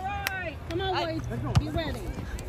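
Players' voices calling and shouting across a soccer field, with a sharp knock about one and a half seconds in.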